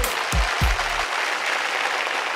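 Audience applauding as a live song ends. The band's last two deep beats sound within the first second, and the clapping carries on after them.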